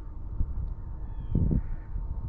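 Wind rumbling on an outdoor microphone, uneven in strength, with a faint steady thin whine underneath and a brief louder rumble about one and a half seconds in.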